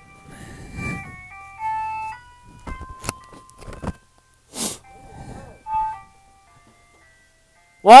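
A tinny electronic tune of plain single notes stepping up and down, like an ice cream truck or door-chime melody, played in two phrases with a short break midway. A sharp knock sounds about three seconds in.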